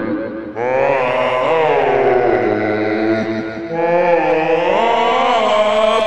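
Several voices holding long, chant-like sung notes that slide slowly up and down in pitch, from a kids' punk band's album recording. A new sung phrase comes in about half a second in and another near four seconds in.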